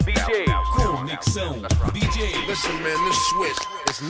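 Hip hop track with rapping over a beat, played from a vinyl record in a DJ mix. The deep bass drops away a little past halfway through.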